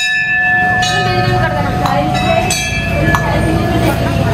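A temple bell is struck and rings with several steady overlapping tones that fade slowly. It is struck again, more lightly, about two and a half seconds in, with a few short metallic clinks in between.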